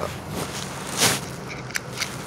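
Handling noise from a Honda steering-column wheel lock assembly being worked by hand: a short scraping rustle about a second in and a light click near the end.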